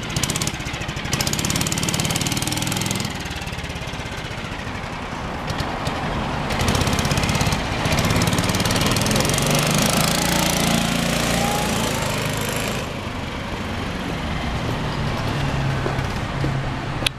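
1959 Mitsubishi Silver Pigeon C83 scooter engine running, growing louder for several seconds as the scooter pulls away, then receding as it rides off down the street.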